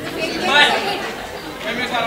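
Chatter of several people talking and calling out over one another in a large hall, no single voice clear.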